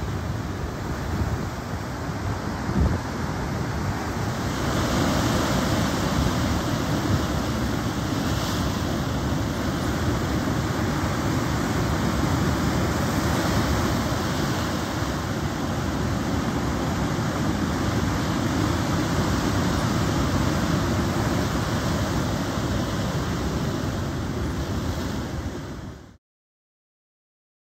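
Ocean surf breaking and washing over a rocky shore: a steady rush of noise that grows louder about four and a half seconds in.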